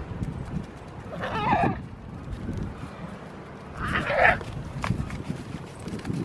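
Goat bleating twice, two short calls about three seconds apart, with a single sharp knock just after the second.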